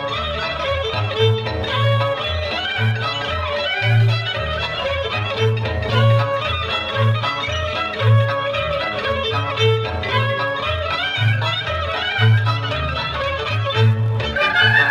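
Romanian folk dance music: a fiddle-led melody moving in quick notes over a steady, pulsing bass beat.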